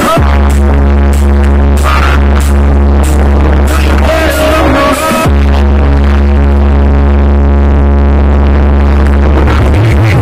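Loud electronic music pumped through a sound-trailer wall of 36 Triton AK 6.0 15-inch subwoofers, with a deep bass note held steady under the melody. The bass breaks off twice with a falling sweep, near the start and about five seconds in.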